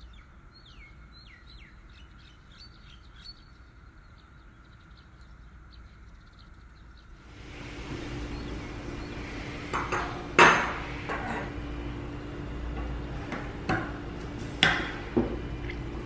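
Faint high chirps for the first seven seconds. Then a steady room hum with a series of sharp metallic clicks and clinks as the brass parts of a CarolBrass C/Bb trumpet are handled, the loudest about ten seconds in.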